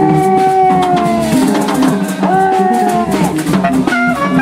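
Free jazz improvisation: a saxophone holds a long high note that sags slightly in pitch, breaks off, and holds a second one. Lower lines and a drum kit keep moving underneath.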